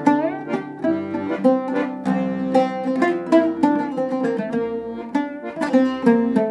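Oud and accordion playing an instrumental duet: sharp plucked oud notes over the accordion's held chords and melody.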